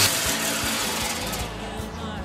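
Sandpaper rasping against an aspen burl spinning on a wood lathe, fading gradually over two seconds, with a low hum from the lathe underneath.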